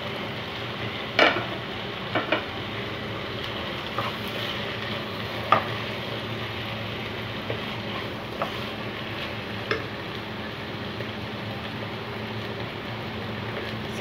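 Sliced onions and chopped tomatoes frying with a steady sizzle in a pan, stirred with a wooden spatula that knocks and scrapes against the pan several times.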